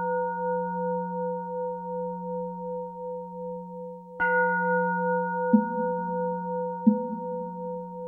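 A Buddhist bowl bell rings on from a strike just before, fading with a slow wavering pulse, and is struck again about four seconds in. After that strike come two lighter short knocks about a second and a half apart.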